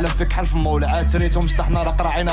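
Moroccan trap song playing: a rapper's quick-fire verse in Arabic over a heavy, deep bass whose notes glide downward, with hi-hats ticking above.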